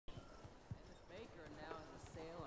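A few soft, low thumps, then a faint voice starting to talk about a second in.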